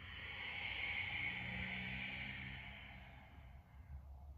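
One long, audible breath out, swelling over about a second and then fading away over the next two or three, as the spine rounds into cat pose.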